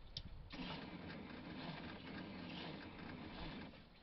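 Air-cooled 1700cc flat-four engine of a 1970s VW bay-window bus being started off a jump-starter pack: a click, then the engine turning over for about three seconds before it stops near the end.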